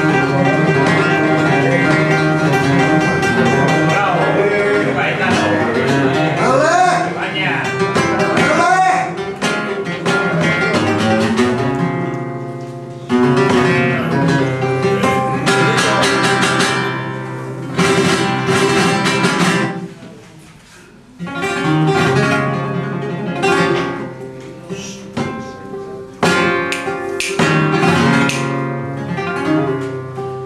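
Flamenco guitar playing a siguiriya, with picked passages and sudden bursts of strummed chords, and a short lull about two-thirds of the way through.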